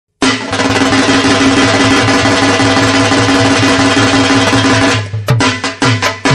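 Drum music: a fast, continuous drum roll, then about five seconds in a beat of separate drum strokes, each with a pitch that drops, about four a second.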